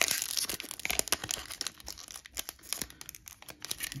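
Foil wrapper of a Yu-Gi-Oh booster pack crinkling and tearing as it is pulled open by hand: a thick rustle at the start, then scattered sharp crackles.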